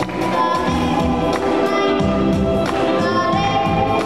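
A boy singing into a microphone over amplified instrumental accompaniment with a steady beat.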